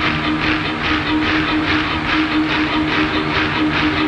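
Live rock concert intro: a rhythmic pulse about four beats a second over a steady held low tone, just before the band's first song starts.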